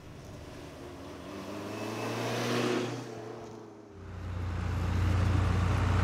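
A pickup truck drives up a gravel road toward the listener and passes, its engine and tyre noise swelling and then fading. About four seconds in, a crawler bulldozer's diesel engine takes over, running steadily with a deep, louder hum.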